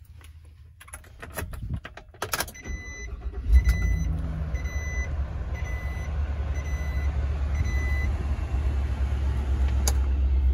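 Ignition key clicking in the switch, then a dashboard warning chime beeping repeatedly while the 6.6-litre gas V8 of a 2021 Chevrolet 4500 low cab forward cranks and starts about three and a half seconds in. It settles into a steady, pretty quiet low idle.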